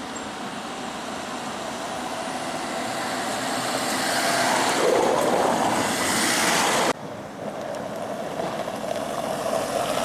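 A car approaching and passing close by, its tyre and engine noise building steadily to a peak; the sound cuts off abruptly about seven seconds in, followed by a quieter, steady rushing street noise.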